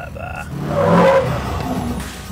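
Modified diesel pickup engine revving hard under acceleration, swelling to its loudest about a second in, then easing off: the truck is tuned to blow out thick black exhaust smoke.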